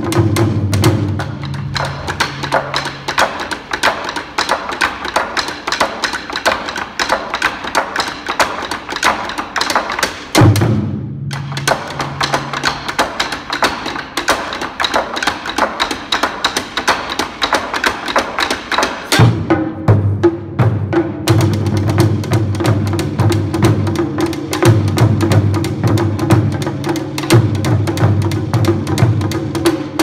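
Japanese taiko drums played by a small ensemble with bachi sticks: a fast, dense stream of strokes, broken about ten seconds in by a short gap and one loud hit, with heavy low drum beats coming back in strongly from about nineteen seconds.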